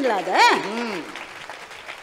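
Applause in a large audience, with a woman's voice rising and falling in pitch over it in the first second; the clapping then goes on more softly.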